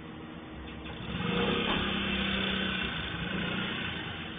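A small motorcycle engine running and pulling away, growing louder about a second in and holding a steady tone.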